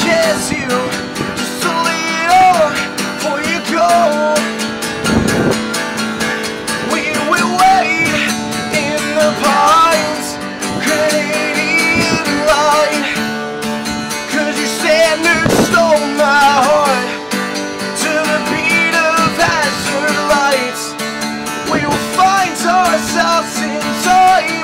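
A man singing over a strummed acoustic guitar: a solo acoustic song, the voice rising and falling in sung phrases with the guitar chords ringing steadily underneath.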